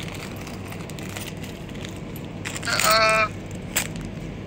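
Steady room hum, then a little over halfway through a short, high-pitched vocal sound like an "ooh" lasting under a second, followed by a single click just before the end.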